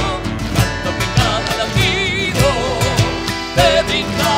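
Argentine zamba music: a guitar strummed in regular strokes under a melody with wide vibrato, in an instrumental stretch between sung verses.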